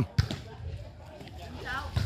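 A volleyball thumps once, sharply, just after the start, over low outdoor background noise with a faint distant voice near the end.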